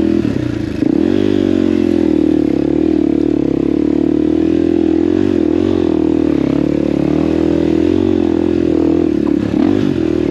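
Enduro dirt bike's engine under load climbing a rutted trail, its pitch rising and falling as the throttle is worked. The sound dips briefly and then picks up again about a second in.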